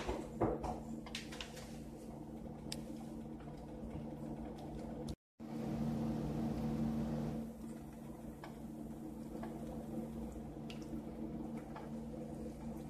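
Thick jarred pasta sauce sliding and plopping out of the jar onto meatballs in a frying pan, over a steady low hum. There are a few light clicks at the start, and the sound cuts out completely for a moment about five seconds in.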